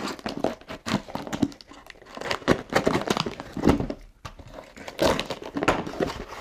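A cardboard shipping box being opened: a box cutter slicing along the packing tape, then the flaps pulled apart, giving a run of irregular scrapes, crackles and rustles.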